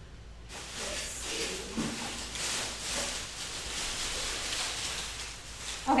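Leafy branches rustling as they are gathered and handled, starting about half a second in.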